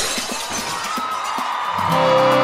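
Bright crash of a live band's cymbal ringing out after a loud stage hit, with the band's music starting near the end.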